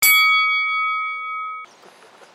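A single bell-like chime, struck once and left ringing with a bright metallic tone, then cut off abruptly after about a second and a half: the sound logo that goes with the channel's title card.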